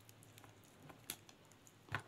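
Mostly quiet, with a few faint, short clicks and handling sounds, the last near the end the loudest, as hands press rice stuffing into a hollowed vegetable.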